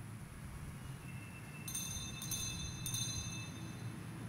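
Altar bells struck about three times from around the middle, ringing with several high clear tones over a low steady hum.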